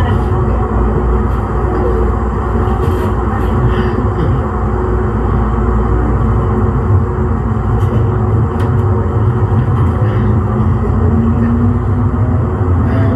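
Siemens S200 light rail vehicle giving a steady low rumble and electrical hum, with a faint tone rising slightly in pitch near the end.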